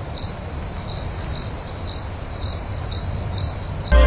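A cricket chirping in a steady rhythm, about two to three chirps a second, over a low background rumble.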